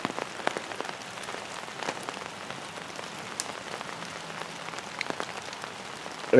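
Steady rain falling, with many scattered sharp ticks of single drops landing close by.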